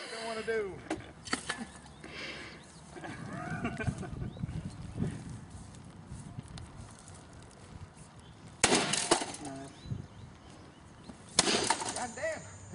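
A long stick smashing down on an object on the ground: two loud crashes about three seconds apart, late on.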